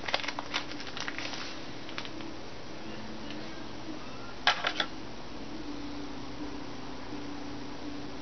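Light clicks and handling noises as fly-tying materials (strands of crystal flash) are picked out off-camera, with a short cluster of sharper clicks about halfway through, over a steady low hum.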